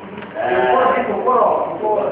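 A puppeteer's male voice speaking for a wooden rod puppet in a wayang golek performance: wordless vocal sounds that bend up and down in pitch, starting about half a second in.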